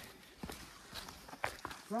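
Footsteps of hikers walking on a stone trail: a few light, irregularly spaced steps.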